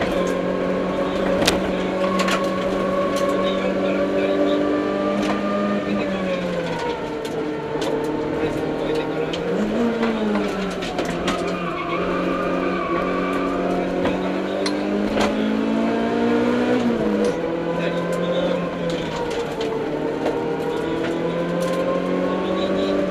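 Mitsubishi Mirage CJ4A rally car's engine heard from inside the cabin at speed, mostly held at steady revs, with the pitch dropping and picking up again several times. Short sharp ticks are scattered throughout.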